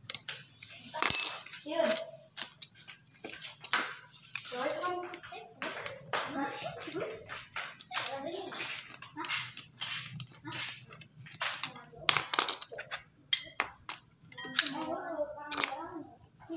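Sharp clicks and knocks of a crop sprayer's water pump parts being handled and taken apart, the loudest about a second in and again near twelve seconds, over background voices, a child's among them.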